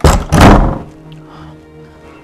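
A wooden door shut with a loud, heavy thud in two quick hits in the first second, over soft background music.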